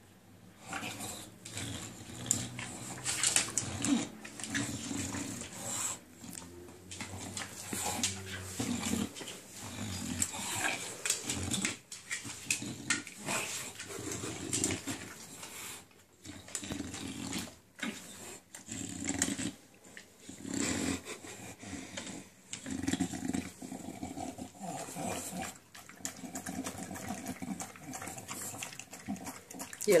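English bulldog's breathing and eating noises at a stainless steel bowl of raw minced meat, coming in irregular bursts with short pauses between them.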